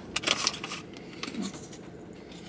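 Faint rustling and crinkling of a plastic snack bag with a few small clicks, mostly in the first half-second and again about one and a half seconds in.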